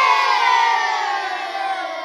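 A group of children cheering together in one long cheer that slides slightly down in pitch and fades.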